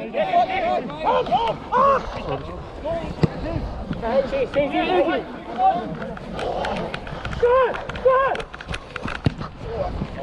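Rugby players shouting and calling to each other on the pitch, heard from a referee's body camera as he runs, with a series of sharp footfall thuds in the second half.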